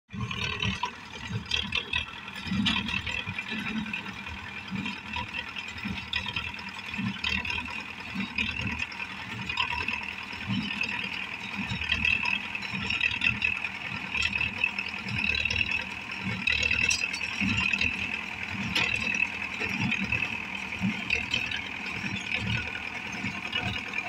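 Belarus MTZ-82 tractor's four-cylinder diesel engine running under load as it pulls and drives a small square baler, with the baler's mechanism clattering along with it.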